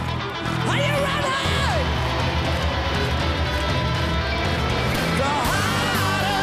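Live hard rock band playing: distorted electric guitar, bass guitar and drums, with a guitar note bending up and back down about a second in. A lead vocal comes in near the end.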